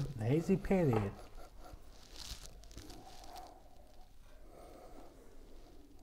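A man's voice for about the first second, then quiet room tone with a faint, short sniff about two seconds in as a glass of beer is smelled.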